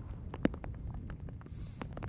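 Fly reel clicking irregularly as line is wound in against a hooked coho salmon, with one sharper click about half a second in, over a low steady rumble. A short hiss comes near the end.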